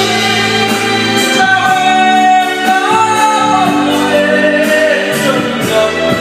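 Karaoke singing: a man sings through a microphone over a loud backing track played through the room's speakers, holding long, sliding notes.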